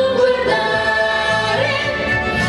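Several voices singing together over backing music in a musical number, holding long sustained notes.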